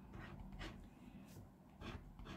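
Faint scraping of a scratch-off lottery card's coating with a hand-held scraper, a few short strokes.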